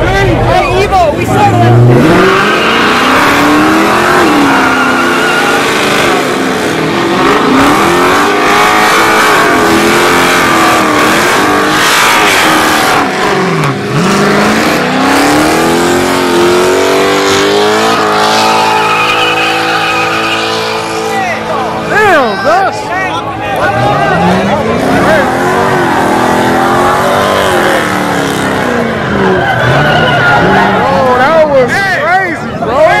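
A car doing a burnout: the engine revs up and down again and again while the rear tyres squeal and spin, with the crowd shouting over it.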